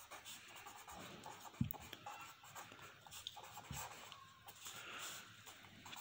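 Faint scratching of a felt-tip marker writing on paper, with two soft thumps about one and a half and three and a half seconds in.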